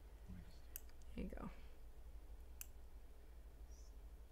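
Quiet room tone with two faint, sharp clicks, the first under a second in and the second nearly two seconds later, and a brief murmured word between them.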